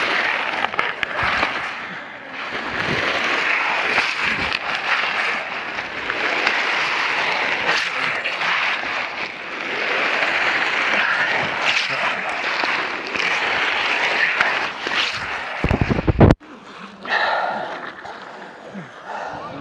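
Rough scraping and rustling as a camera and clothing rub and slide over ice, with scattered knocks. A loud low bump about a second and a half before the end, then the sound cuts off suddenly.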